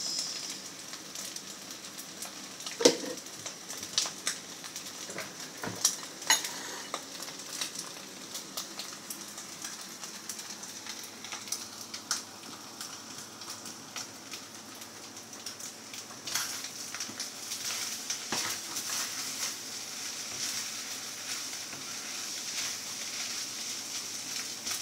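Fried rice sizzling in a hot frying pan, a steady hiss, with a few sharp knocks and clatters, the loudest about three seconds and six seconds in.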